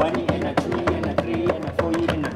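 Several hands tapping semiquavers on a wooden tabletop in rapid, even strokes, while the group chants the count 'one-e-and-a, two-e-and-a' in time.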